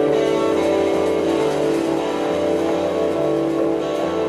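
Live band music from electric guitars and keyboard: a chord held steady over a bass line that steps from note to note about once or twice a second, with the horns silent.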